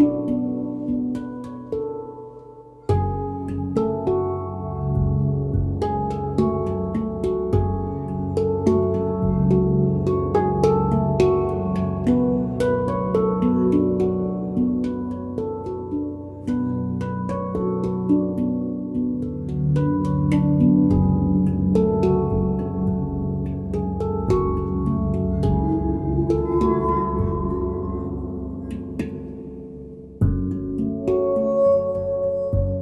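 Ayasa steel handpan played by hand, a flowing run of struck notes that ring on and overlap, with long held glassy tones of a cristal Baschet beneath. The music thins briefly about three seconds in, then starts a new phrase, and fades toward the end.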